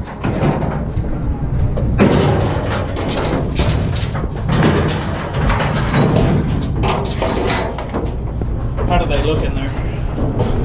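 Cattle clattering and banging in a metal livestock trailer as they are loaded, with many irregular knocks and clanks over a steady low rumble.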